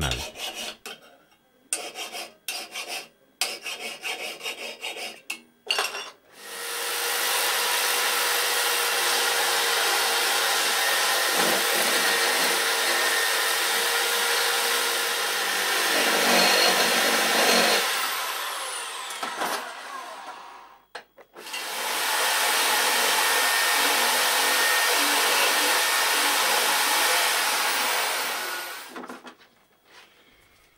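Steel shotgun part, a trigger guard, being worked with a hand file. There is a run of separate file strokes in the first few seconds, then two long stretches of steady abrasive rasping, one from about six seconds in to about twenty and one from about twenty-two seconds to near the end.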